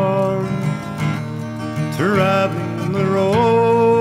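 Folk song with strummed acoustic guitar and a man's voice holding long sung notes that slide up in pitch about halfway through and again near the end.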